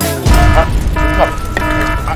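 An edited-in electronic sound effect: a deep hit, then a repeating alarm-like tone in pulses about half a second long, under a man's gasp from the chilli heat.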